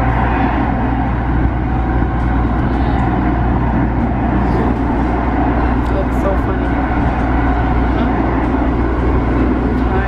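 Steady low rumble of a rapid-transit train car in motion, heard from inside the carriage.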